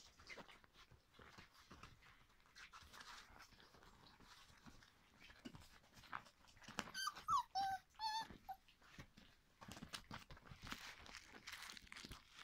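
Puppies giving a quick run of four or five short, high whining yelps about seven seconds in, over faint rustling and shuffling of the litter moving about on a quilt.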